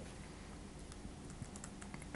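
Faint typing on a computer keyboard: a short command tapped out in a handful of light key clicks.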